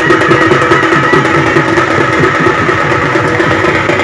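Loud procession music: fast, dense drumming with steady held pitched tones over it.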